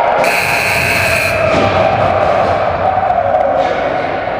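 Ice rink's buzzer sounding one long steady tone, with a brief shrill sound over it for about a second near the start.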